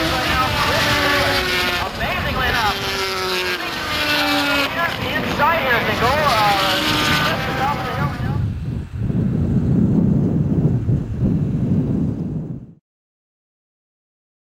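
Several road-racing motorcycle engines at high revs as the bikes race past, their pitch rising and falling. After about eight seconds this gives way to a steady low rumble that cuts off suddenly to silence near the end.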